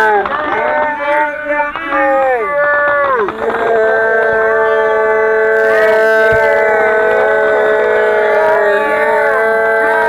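Several firework whistles screaming at once. In the first few seconds the whistles fall in pitch and cut out one after another, then a few steady whistles hold on, with a single sharp pop a little past the middle.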